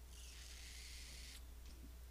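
Near silence: faint room tone with a low hum, and a faint hiss for about the first second and a half.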